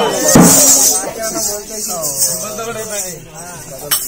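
Folk music with jingling percussion that stops about a second in, followed by a performer's voice speaking with pitch that rises and falls. There is a single sharp knock near the end.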